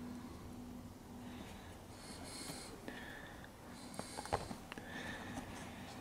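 Faint breathing close to the microphone, with a few small clicks about four seconds in.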